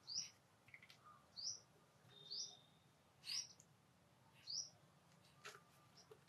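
A small bird chirping faintly: short, high, upward-rising chirps, about one a second, over near silence.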